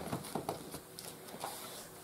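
Faint handling of beading materials: a few soft clicks in the first half second, then quiet rustling.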